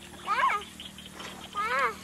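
Two short voiced calls, each rising then falling in pitch, a little over a second apart.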